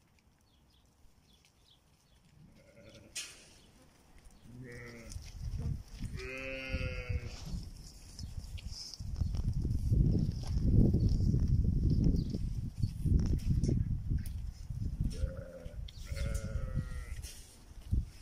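Sheep bleating several times: a long, wavering bleat about six seconds in is the clearest call, shorter bleats come before it, and more follow near the end. In the middle stretch a steady low rumbling noise is the loudest sound.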